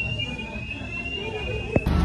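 A steady, high-pitched electronic alarm tone sounds for nearly two seconds, then stops abruptly with a click.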